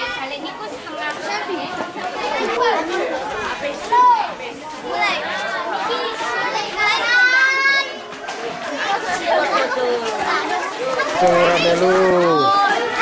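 A crowd of schoolchildren chattering and calling out all at once, one child's voice rising into a long high shout about seven seconds in.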